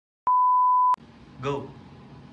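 An edited-in 1 kHz test-tone bleep, one steady beep under a second long, cutting in and out abruptly after a moment of dead silence. A brief voice sound follows about a second and a half in.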